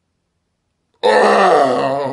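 After a second of silence, a man's loud, drawn-out guttural vocal sound starts abruptly, like a burp or groan, low and wavering in pitch.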